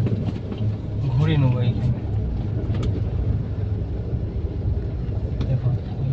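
Suzuki car's engine running at low speed during a slow, tight turn, heard from inside the cabin as a steady low hum. A brief bit of voice comes in about a second in.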